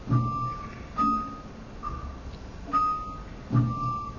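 Javanese gamelan playing a slow, even passage: five struck notes in turn, each with a low drum stroke beneath it, a little under one a second.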